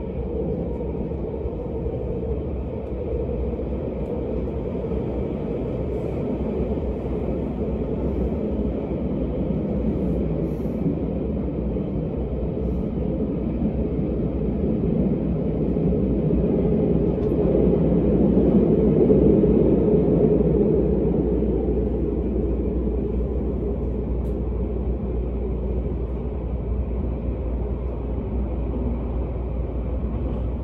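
Odakyu 60000-series MSE Romancecar running through a subway tunnel, heard from inside the passenger car: a steady low rumble of wheels and running gear. It grows louder for a few seconds around the middle, then settles back.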